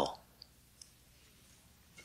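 A pause in a man's speech: his last word trails off, then near silence broken by two faint, short clicks.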